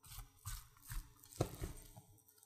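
A plastic spatula stirring and scraping through crumbly cooked potato, five or so soft, short scrapes and squishes.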